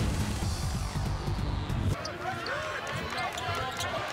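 Sports-highlight intro music with a heavy bass, cut off abruptly about halfway through. It gives way to live basketball game sound: a ball being dribbled, short sneaker squeaks on the hardwood court and arena crowd noise.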